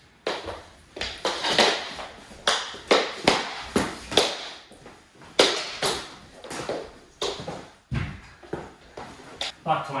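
Mini-stick hockey play on a hardwood floor: a run of sharp, irregular clacks and knocks of plastic sticks and puck on the floor, with scuffling bodies and vocal grunts from the players.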